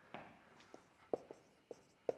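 Marker pen writing on a whiteboard: a few faint, short strokes and taps of the tip on the board.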